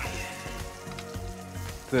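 Background music with steady sustained tones over hot oil sizzling in a cast-iron kazan, where chicken wings are being deep-fried a second time in very hot oil.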